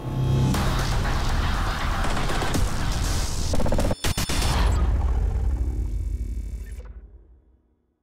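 Cinematic logo sting: dense music and sound effects, broken by a sharp hit about four seconds in, then a low rumble that fades out to silence near the end.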